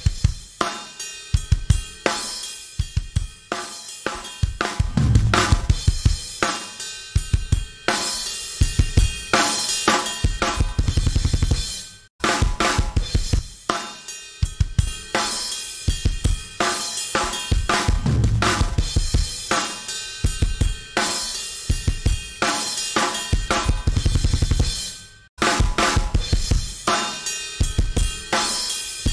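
A multitrack mix led by a drum kit, kick, snare and cymbals, played back from a DAW; the playback breaks off and restarts about twelve seconds in and again near the end. It plays through the SSL Native X-Saturator on the master bus, heard clean while bypassed and with its drive saturation switched in near the end.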